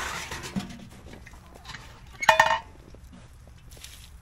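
A galvanized double-wall chicken waterer being twisted onto its base to seal it: a metal scrape at the start and one loud, short ringing metal clank a little past halfway.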